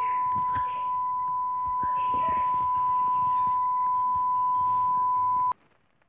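Television colour-bar test tone: one long, unbroken beep at a single steady pitch, cutting off suddenly about five and a half seconds in.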